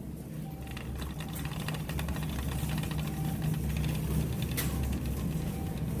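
Shopping cart being pushed across a supermarket floor, with a fine rapid rattle over a steady low hum.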